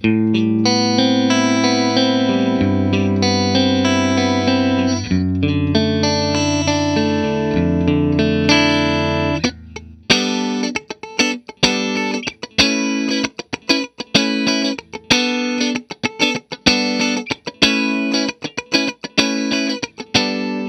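Electric guitar through a Bondi Effects Squish As compressor pedal with its blend knob fully up, into a Fender '65 Twin Reverb amp. Held, ringing chords for about the first ten seconds, then short, choppy chord stabs in a steady rhythm, two or three a second. Each picked attack comes through with a heavy, punchy hit from the fully wet compression.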